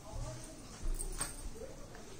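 Crepe sarees being handled and spread on a bed: soft fabric rustling with a couple of light thumps, and a faint wavering whine in the background.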